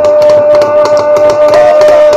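Film title music: a steady held tone over a fast, even percussive beat.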